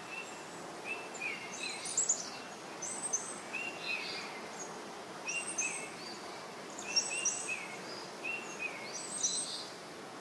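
Small birds chirping in short, repeated calls that come in clusters every second or so, over a steady soft background hiss.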